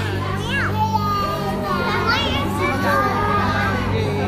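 Children's voices calling and squealing, high and sliding in pitch, over background music with a steady low drone.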